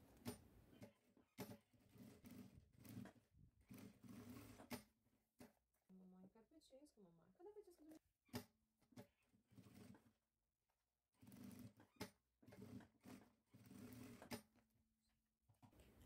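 Near silence: a few faint scattered clicks and soft rustles over a faint low hum.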